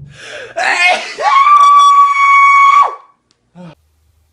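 A man's exaggerated sneeze: a short build-up, then a loud scream held on one high pitch for about two seconds, cut off sharply.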